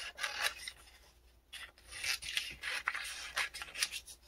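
Scissors cutting through a thin printed book page, a run of short, uneven snips with paper rustling between them.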